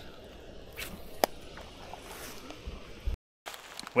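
Quiet background with faint handling of a spinning rod and reel and one sharp click about a second in. The sound drops out completely for a moment near the end.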